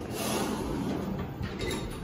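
Schindler 3300 traction elevator's doors sliding open, a steady rushing noise that rises as soon as the call button is pressed.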